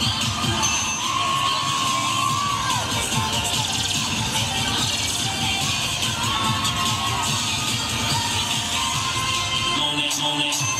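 Cheer routine music mix with a fast beat playing over an arena PA, with a crowd cheering and children shouting over it.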